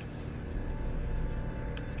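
A steady low background hum with a short, sharp click near the end.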